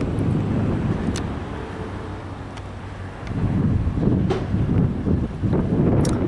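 Wind buffeting the camera microphone in gusts: a loud, rough low rumble that eases a little in the middle and picks up again about three seconds in.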